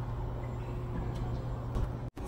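Steady low hum and background noise of a large work floor, with a few faint clicks near the end.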